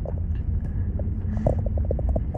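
Steady low rumble of a car on the move, heard from inside the cabin, with a few faint clicks.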